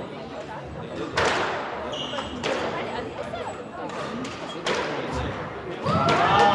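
Squash ball being hit back and forth in a rally: four sharp smacks of racket strikes and the ball hitting the court walls, spaced one to two seconds apart, echoing in the enclosed court.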